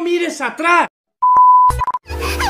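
A man's excited voice, then a high steady bleep tone lasting about half a second, with a short broken stretch of the same tone near the end: an edit-inserted bleep of the kind used to censor a word.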